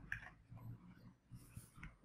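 A few faint clicks and rustles of a clear plastic clamshell package and its paper insert being handled as the package is opened.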